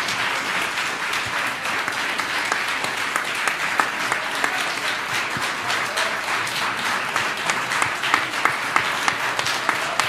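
Audience applauding. Dense clapping at first, with individual claps standing out more sharply in the second half.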